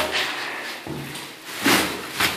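Plastic shopping bag of trash rustling and crinkling as it is pushed down into a plastic-lined trash can, with a sharp louder crackle at the start and again about three-quarters of the way through.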